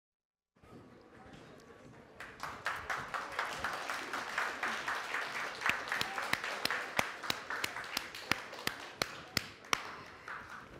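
Audience applauding, starting softly about half a second in and swelling about two seconds in, with a few louder single claps close by standing out above the rest.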